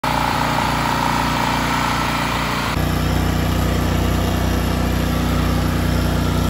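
Portable gasoline generator engines running steadily. About three seconds in, the sound cuts to a different generator with its own steady engine note.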